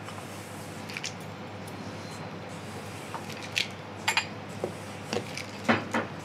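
A spatula scraping and knocking against a stainless steel mixing bowl as cookie dough is folded by hand. It comes as a few scattered short strokes, the loudest near the end.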